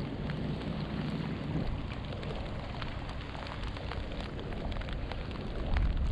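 Steady rain falling on the lake and the angler's gear, with scattered single drops ticking close to the microphone.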